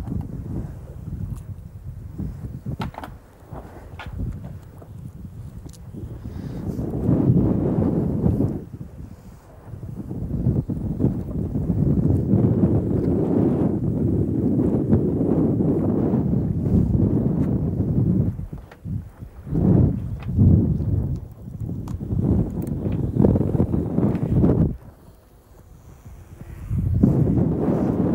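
Wind buffeting the microphone in uneven gusts, with brief lulls.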